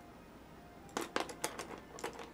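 A quick clatter of light wooden clicks about a second in, with one more near the end, as paintbrushes are knocked together while a smaller brush is picked out.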